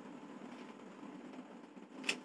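Faint, steady low mechanical hum in the room, like a motor running in the background, with no other events.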